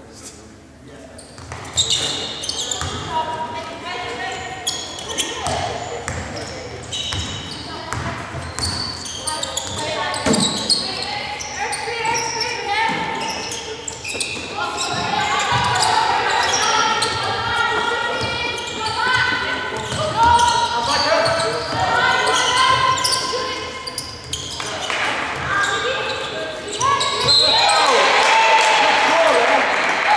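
Basketball game sounds in a large echoing hall: the ball bouncing on the wooden court, high-pitched shoe squeaks and players shouting to each other. It is quiet for the first second or so, then busy and loudest near the end.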